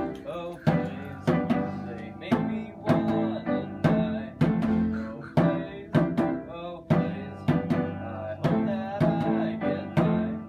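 A small live band of piano and djembe hand drum playing a song together, with a steady beat of about two strokes a second and struck chords ringing between them.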